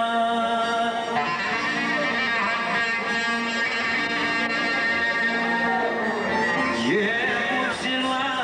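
Live Greek folk band playing: a clarinet carrying a long, ornamented melody over a plucked laouto and an electric keyboard. Near the end a man's singing voice comes in with a sliding note.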